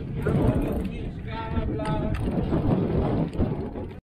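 Mountain bike rattling and rumbling over rough, stony ground, with wind buffeting the microphone. A person's voice calls out briefly in the middle.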